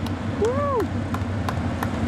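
Race-car engines running as a steady low rumble in the background. A short shout about half a second in, and a string of sharp, irregular clicks.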